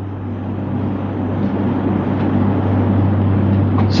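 A loud, steady rumble with a low hum, growing slightly louder, then cutting off abruptly at the end.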